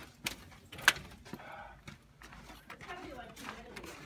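Faint talking with two sharp clicks in the first second, the second one the louder.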